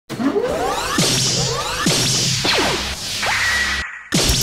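Synthesized whoosh effects: several swishes sweeping up and down in pitch over a low steady drone, ending in a short high tone that cuts off suddenly just before the end.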